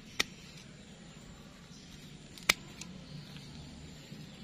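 Pruning shears snipping through the roots of a young sancang seedling: two sharp clicks, one just after the start and a louder one about two seconds later.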